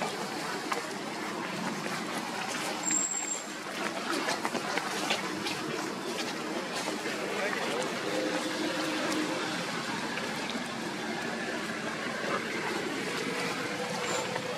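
Indistinct voices over a steady rushing outdoor noise, with scattered faint clicks.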